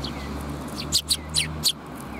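Eurasian tree sparrows chirping: a quick run of four sharp chirps about a second in, with a couple of fainter chirps at the start, over a low steady hum.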